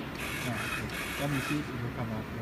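Drive motors of a two-head CNC plasma cutter whirring in several short spells, with no cutting arc.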